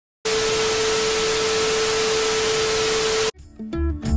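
Edited-in static sound effect marking the drone crash: a loud, even hiss with a steady mid-pitched tone running through it, lasting about three seconds and cutting off suddenly.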